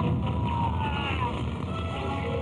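Film sound effects of an electrical blast on a power pole: a steady rumbling roar of sparks and fire, with a tone sliding slowly down in pitch over the first second and a half.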